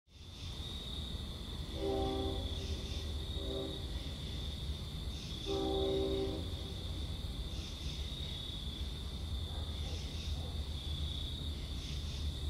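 Night-time ambience: a steady high insect-like trill over a low rumble, with three low pitched calls, two long and one short, about two, three and a half and six seconds in.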